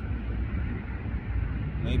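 A steady, low outdoor rumble with no clear pitch, and a single spoken word near the end.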